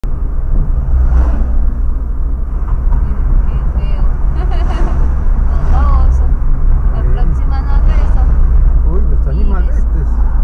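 Steady low rumble of a car's engine and tyres heard from inside the cabin while driving, with voices talking over it at intervals.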